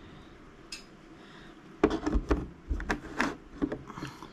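Painting tools being handled on the work surface: about two seconds in, a quick run of some ten sharp knocks and clinks, like a brush handle tapping against a palette and paint pots, lasting about two seconds.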